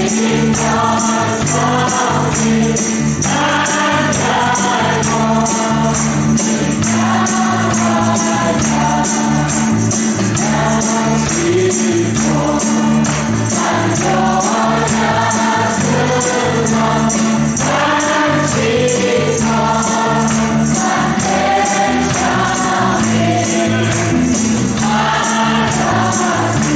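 Group of voices singing a worship song in Khasi, backed by tambourine, guitar and bass guitar keeping a steady beat.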